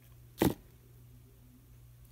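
A single sharp click about half a second in as a pair of small metal round-nose pliers is set down on the craft table, over a faint steady low hum.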